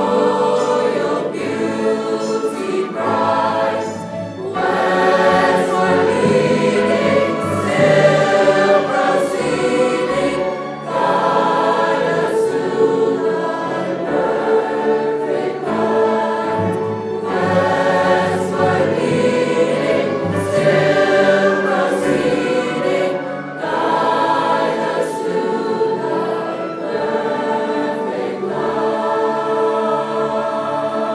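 Large mixed choir singing a Christmas cantata with piano and instrumental accompaniment, in sustained phrases with brief breaks between them.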